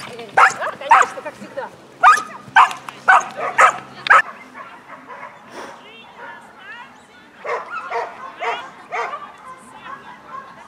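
A dog barking excitedly in short, loud barks, about seven in quick succession over the first four seconds. After a pause, four fainter barks follow about half a second apart.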